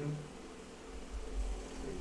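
Felt-tip marker writing on a whiteboard, with a low rumble setting in about a second in.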